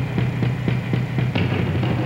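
Acoustic drum kit played solo: a quick run of strikes on drums and cymbals over deep, ringing tom and bass drum tones.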